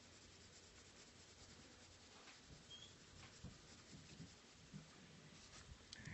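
Faint scratching of a gray colored pencil shading lightly on paper.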